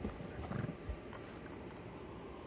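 A few soft thumps and knocks in the first second as small dogs scuffle and paw at each other on blanket-covered couch cushions.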